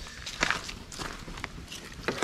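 Footsteps on a wet driveway: a few soft steps and scuffs.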